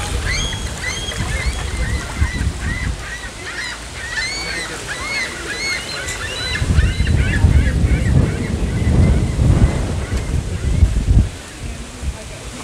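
A group of birds calling with many quick, high, repeated chirps, thinning out near the end, over wind buffeting the microphone. The wind gusts strongest in the second half.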